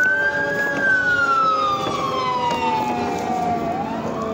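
Fire truck siren wailing: a slow rise that peaks about half a second in, then a long fall over about three seconds before it starts rising again near the end.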